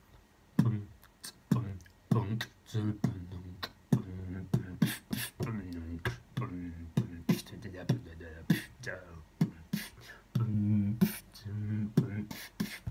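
Human beatboxing: a fast rhythmic run of mouth-made drum sounds, with punchy lip kick drums and sharp hissy hits over a low hummed bass tone. It starts about half a second in.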